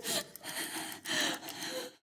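A person gasping for breath: about four ragged breaths, the last one fading out.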